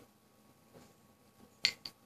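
Two sharp metallic clicks close together near the end: the stainless steel parts of a magnetic-button mechanical vape mod snapping together as its rare-earth magnets pull them.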